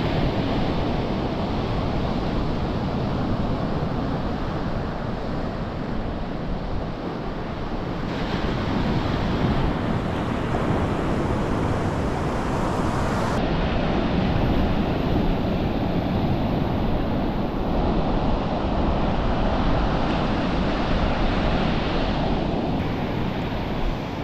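Surf washing onto a sandy beach, a continuous rush of breaking waves, with wind rumbling on the microphone.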